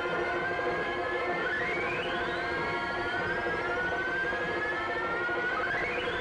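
Eerie synthesized film background score: a sustained drone of steady tones with a siren-like electronic tone that sweeps sharply upward and then glides slowly higher. The sweep comes round about every four seconds, twice here.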